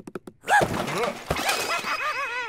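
A quick run of small clicks, then about half a second in an animated character's excited wordless vocal exclamations, high and bending up and down in pitch.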